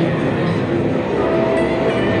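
Steady din of a busy guitar show: an electric guitar played through a small amp, with a held note near the end, over the hubbub of the exhibition hall.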